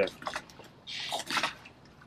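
A hand coconut opener worked into a fresh coconut to punch a drinking hole: a few light clicks, then a short scraping hiss about a second in.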